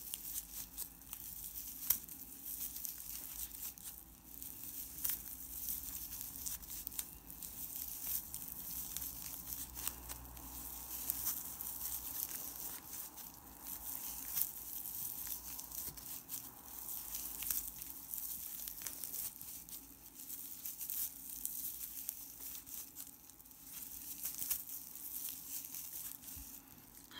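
Crochet hook working stiff, glossy tape yarn in continuous single crochet: a steady stream of small crinkling rustles and light clicks as the yarn is pulled through the stitches.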